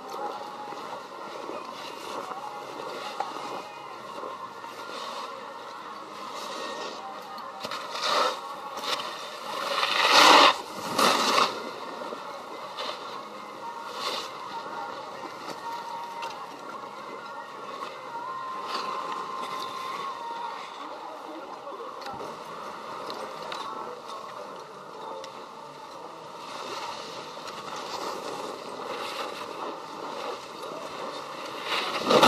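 Skiing or snowboarding equipment sliding and scraping over groomed snow while moving downhill. The scraping swells to its loudest about ten seconds in.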